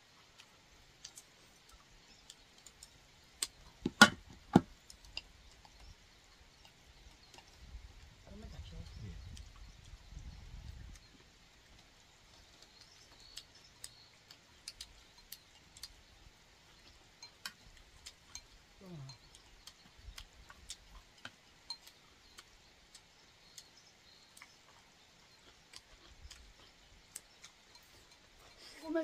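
Chopsticks tapping and clinking against glass and stainless-steel food containers while eating, faint ticks scattered throughout, with two sharp clinks about four seconds in. A low voice murmurs briefly a third of the way through, and a short vocal sound comes about two-thirds in.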